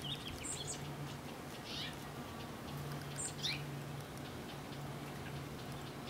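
Songbirds chirping: a few short high calls, one sweeping downward, over a low steady hum that comes and goes.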